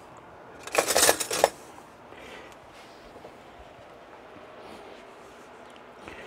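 Metal utensils clinking and rattling briefly about a second in, as one is pulled from a utensil holder; low room tone for the rest.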